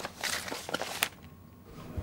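Papers being rustled and shuffled through in a search for a document, in a few short bursts with a sharp click about a second in.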